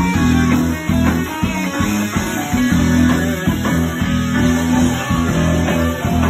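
A live rock band playing loudly: electric guitars over bass guitar, drums and keyboard.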